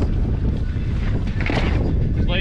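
Wind buffeting the microphone: a steady low rumble with no other clear sound.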